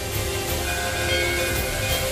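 Dramatic TV-serial background score: a sustained chord of several held tones over a deep, steady rumbling drone.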